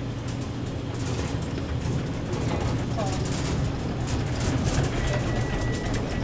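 A tall ultra-cold laboratory freezer being wheeled across a hard floor: a steady low rumble with scattered rattles and clicks. A faint, steady high tone comes in about five seconds in.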